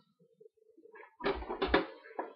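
Marinated chops being dropped by hand into a tray: a short cluster of soft, heavy thumps with some handling rustle, starting a little past halfway.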